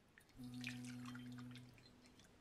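Liquid jelly poured in a thin stream into a glass bowl, faintly trickling and splashing with small drip-like ticks. A low steady hum runs under it and stops shortly before the end.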